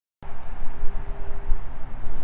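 Wind buffeting a microphone fitted with a furry windscreen: a loud, uneven low rumble that starts abruptly a moment in, with a faint steady hum beneath it.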